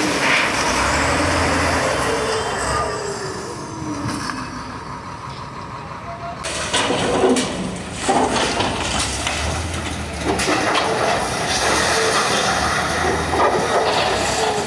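Heavy demolition machinery at work: the diesel engines of a wheel loader and an excavator running while a building is torn down, with crashes and scraping of breaking concrete and sheet metal. The sound changes abruptly about six and a half seconds in, followed by a run of louder crashes.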